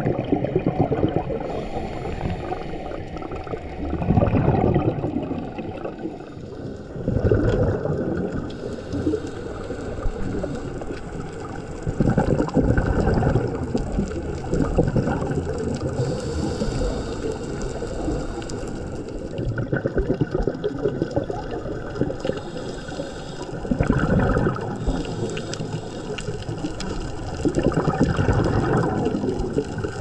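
Scuba regulator breathing heard underwater: gurgling surges of exhaled bubbles every few seconds over a steady low rush of water noise.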